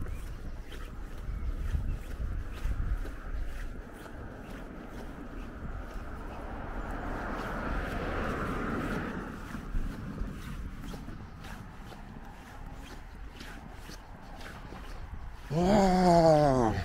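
Footsteps walking at a steady pace, faintly ticking about twice a second over a low rumble. About halfway through, a broad rush of noise swells and then fades.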